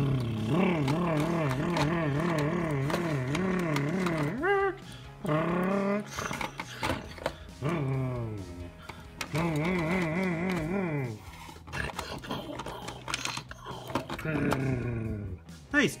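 A man imitating a monster truck engine with his mouth, a revving rumble with a wavering pitch in several long bursts, with quick rising and falling glides between them. Light plastic clicks from the toy on the track come through now and then.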